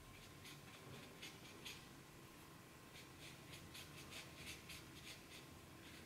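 Faint black marker pen scratching on paper in a series of short, irregular strokes, as small overlapping scale and feather marks are drawn.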